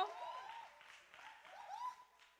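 Congregation applauding, with a few voices calling out, dying away over the two seconds.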